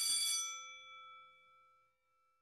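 A single struck bell chime ringing out and fading away, with several ringing tones, gone by about two seconds in.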